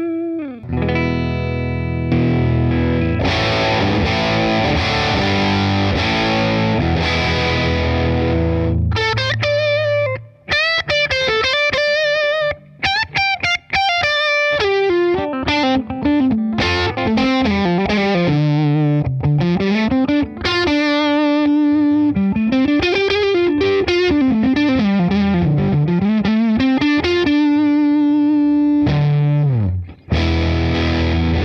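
PRS SE Custom 24 electric guitar, fitted with Gotoh Magnum Lock locking tuners, played through an Organic Sounds Hydra pedal into a Fender '68 Custom Deluxe Reverb reissue amp. A few sustained chords ring for the first several seconds. Then come single-note lines with notes gliding up and down in pitch, ending on a long held note.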